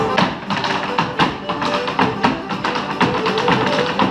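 Irish hard-shoe step dancing: hard shoes striking a wooden floor in fast, dense rhythmic taps, with faint instrumental music behind.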